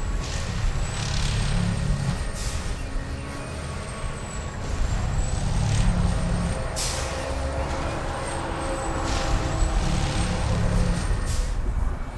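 Track-tamping machine at work: its diesel engine runs steadily under a heavy low pulse that comes about every four to five seconds, with a thin high whine and five short, sharp air hisses.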